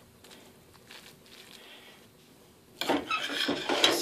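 A serving spoon scraping and knocking against a metal frying pan as cooked rice is spread over the top, starting about three seconds in after a near-quiet stretch.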